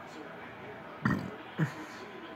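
Two short sounds from a person's throat, about half a second apart, the first a little longer and the second sharper.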